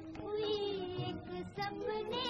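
A high singing voice with vibrato carries a held melodic line over sustained orchestral accompaniment, from an early-1950s Hindi film song. The voice pauses briefly about one and a half seconds in.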